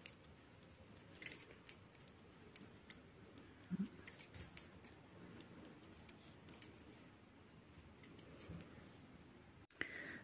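Faint, irregular clicks of metal knitting needles touching as stitches are worked, over quiet room tone.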